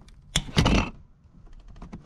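Ratchet and E8 socket working on a tight bolt of the oil drip pan: a sharp click, then a louder short clatter about half a second in as the bolt breaks loose, then a run of small quick clicks near the end.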